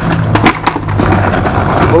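Skateboard on concrete as a kickflip is bailed: a few sharp knocks and clatters of the board and the skater hitting the ground about half a second in, over a steady low hum.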